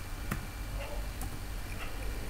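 Computer keyboard keystrokes: a few separate sharp clicks as the last letters of a command are typed and Enter is pressed, over a steady low hum.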